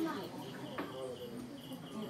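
Crickets chirping in a repeating high pulse, with faint voices murmuring underneath.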